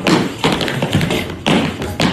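Tap shoes striking a hard studio floor in a tap-dance sequence: a rhythmic run of sharp taps and stamps, the strongest near the start, at about half a second and at about a second and a half.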